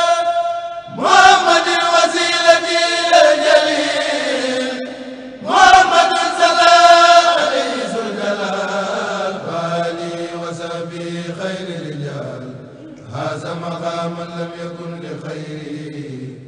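Male voices of a Mouride kourel chanting an Arabic qasida a cappella in long drawn-out melismatic phrases. Two phrases, about 1 s and 5.5 s in, each open on a high held note and fall away. From about 8 s on, lower voices carry the line.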